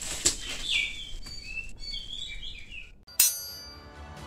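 Birds chirping a few short, sliding notes, after a single click near the start. Just after three seconds a sudden loud struck note with a ringing decay cuts in and fades.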